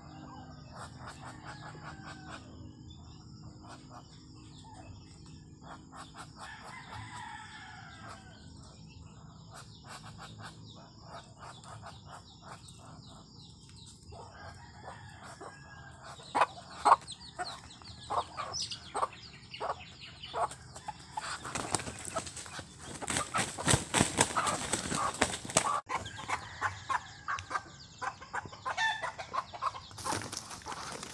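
Short bird calls, then sharp clicks and, about two-thirds of the way in, a loud burst of wing flapping: a white domestic fowl caught in a ground snare trap and struggling.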